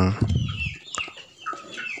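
Chickens clucking: a few short, scattered calls, with a single sharp click about a second in.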